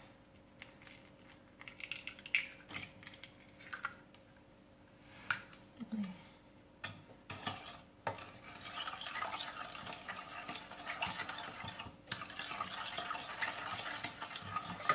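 A few scattered light clicks and taps against a stainless steel pot as an egg is cracked into the milk mixture, then a wooden spoon stirring the liquid steadily in the pot from about eight seconds in.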